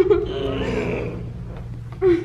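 A man's strained groan, pitched at first and then trailing off into breathy noise, fading over two seconds.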